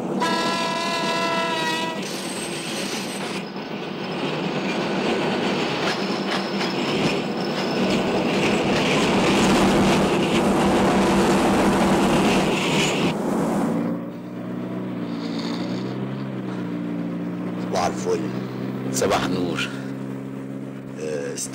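A train horn sounds for about two seconds, followed by the dense running noise of a departing train that lasts about eleven seconds. About fourteen seconds in, this gives way to the low, steady hum of a motor vehicle's engine running.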